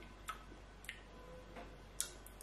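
Faint lip and tongue smacks while tasting a drink: four short clicks spread through a quiet room, the last one the sharpest.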